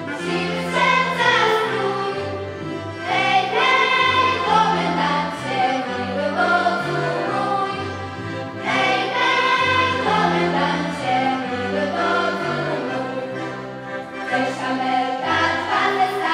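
Children's choir singing a song with live accordion accompaniment, the accordions holding sustained bass notes under the melody.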